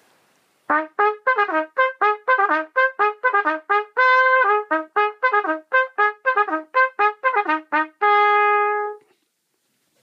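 A bugle call played as a wake-up: a quick run of short, clipped brass notes with one longer note about four seconds in, ending on a single long held note.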